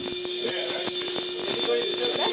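Building fire alarm sounding a steady, unbroken tone, one low note with higher tones above it.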